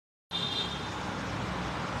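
Steady outdoor background noise with a low rumble, starting a moment in after a brief silence.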